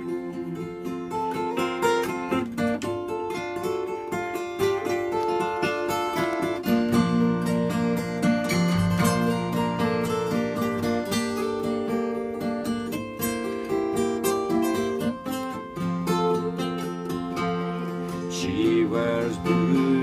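Two acoustic guitars playing an instrumental break in a folk song, picked notes over strummed chords, with no singing.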